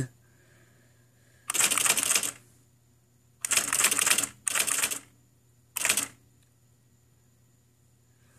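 IBM Personal Wheelwriter 2 electronic daisy-wheel typewriter printing as keys are typed: four short bursts of rapid strikes, with pauses between them.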